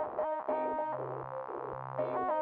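Electronic synthesizer music: a short repeating figure of clean, pure-sounding notes with quick pitch slides between them, over a low steady bass note that comes in about a second in.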